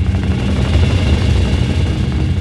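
A loud, low rumble with a rapid flutter.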